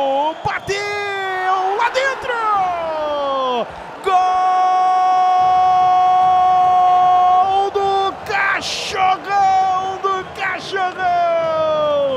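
Brazilian TV commentator's goal call: excited shouts with falling pitch as the penalty goes in, then one long held "Goool!" cry of about three and a half seconds, followed by more shouting, over crowd noise.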